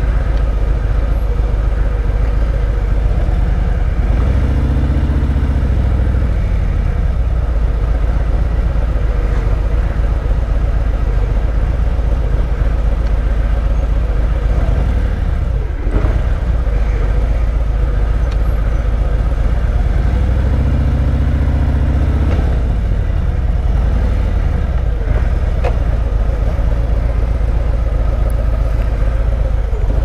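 2017 Harley-Davidson Road Glide Special's Milwaukee-Eight 107 V-twin running at low speed in stop-and-go traffic, a steady loud rumble. The engine picks up briefly about four seconds in and again about twenty seconds in as the bike moves forward.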